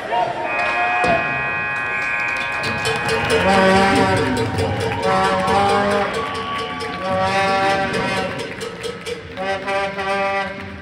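Ice rink's end-of-period horn sounding one steady tone for about two and a half seconds, starting about half a second in, as the period clock runs out.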